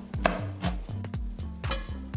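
Chef's knife chopping fresh herbs on a plastic cutting board: a series of sharp knocks of the blade on the board, loudest in the first second.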